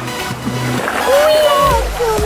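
Sea water splashing around people wading waist-deep, with a woman's drawn-out, wavering call about a second in, over electronic dance music.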